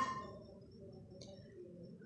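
Faint bird calls, low and repeated, with a single light click about a second in.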